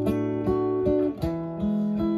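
Acoustic guitar playing a chord accompaniment with no voice, a new strummed chord roughly every half second.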